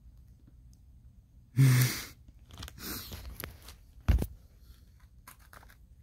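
A brief loud vocal burst about a second and a half in, a sharp thump a little after four seconds, then small crackling clicks near the end as a cream-filled sandwich cookie is bitten into.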